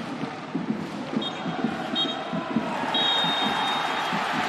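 Referee's whistle blown three times, two short blasts and then a long one near the end: the full-time whistle ending the match. Steady stadium crowd noise runs underneath.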